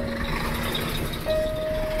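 Road and engine noise heard from inside a moving car as a garbage truck passes close by in the oncoming lane, under background music of slow held notes that change pitch about a second in.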